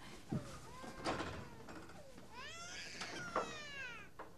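An infant crying in wails, faint at first, with a long, louder wail from a little past two seconds in that rises and then falls away. A soft thud comes about a third of a second in.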